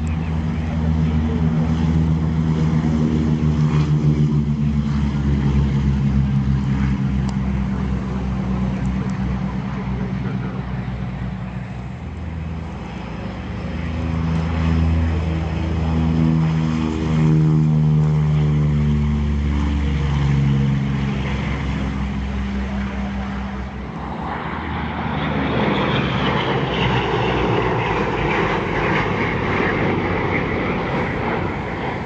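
P-38 Lightning warbirds' twin Allison V-12 engines running hard as the fighters roll past at speed on the runway, the engine note dropping in pitch as one goes by. In the last few seconds the sound turns to a broader rushing drone.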